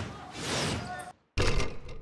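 Basketball court noise: a rush of crowd sound, then, after a brief cut-out, a sudden loud thud and scuffle as play goes on after a missed free throw.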